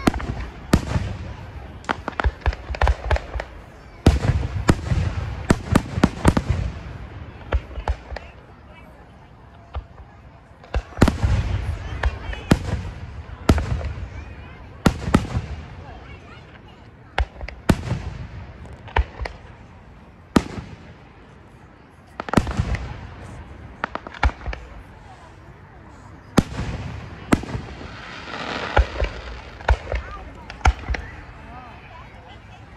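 Aerial fireworks shells bursting over and over: sharp bangs, many coming in quick clusters, each trailing off into a low rolling rumble.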